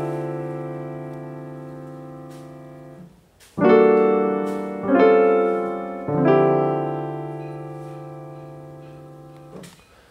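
Piano playing a minor II-V-I in D minor. A D minor 11 chord rings and fades, then three chords are struck about a second apart: E minor 7 flat 5, A altered dominant and D minor 11. The last chord is held and dies away slowly.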